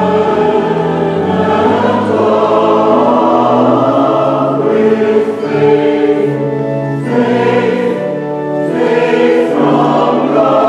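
Mixed church choir singing a choral anthem in harmony, holding sustained chords that shift every second or so.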